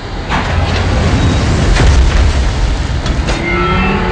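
Film sound design of a giant robot walking: three heavy booming footfalls about a second and a half apart over a deep, continuous rumble.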